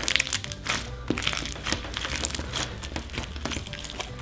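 Whole coffee beans in a clear glue slime crunching and clicking against each other as the slime is squeezed and kneaded by hand, a dense run of small crackles, over steady background music.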